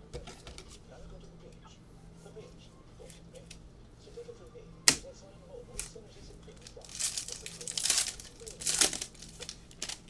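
A trading card pack's wrapper is torn open and crinkled in two loud bursts in the last three seconds, after a single sharp click about halfway through.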